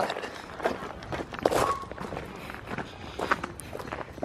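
Footsteps of people walking along a path, irregular steps about every half second.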